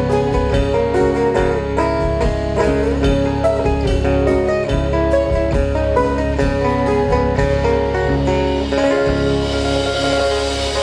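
Live band playing amplified guitar music: strummed acoustic guitar, electric guitars and bass over a drum kit. The drums stop about eight seconds in while the guitar chords keep ringing.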